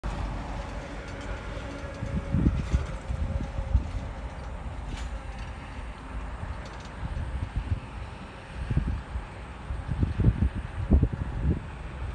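Wind buffeting the microphone in irregular low gusts, heavier in the second half. A faint steady tone sounds in the first three seconds.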